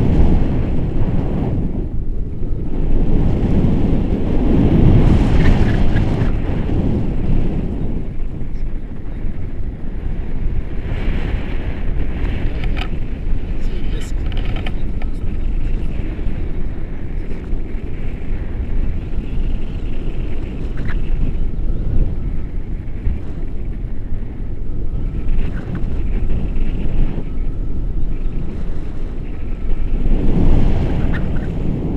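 Airflow buffeting an action camera's microphone during a tandem paraglider flight: a loud, steady rushing that swells and eases, heaviest in the first few seconds.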